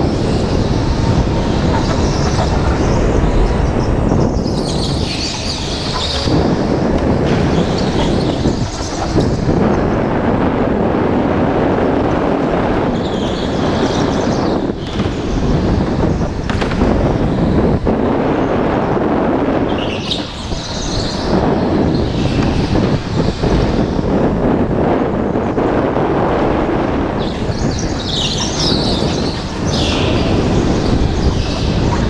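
An indoor rental go-kart driven at racing speed, heard from a camera mounted on the kart: steady, loud motor and chassis-vibration noise, with brief higher-pitched hissing a few times.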